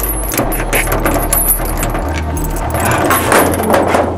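Rapid metallic clinking and jangling, many small clicks close together, over a steady low hum.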